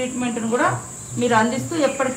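Insects droning steadily at a high pitch, under a woman's speech that pauses briefly near the middle.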